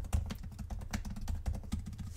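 Typing on a computer keyboard: a quick run of many keystrokes.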